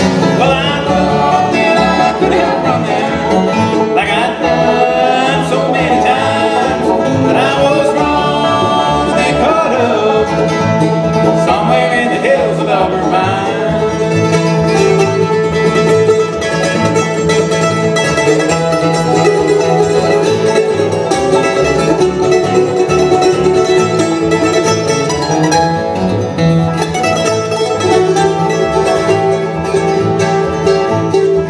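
Live bluegrass band playing an instrumental break, with no words sung: banjo picking, acoustic guitar strumming and upright bass, and a fiddle playing sliding notes in roughly the first half.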